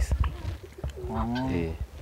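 Doves cooing.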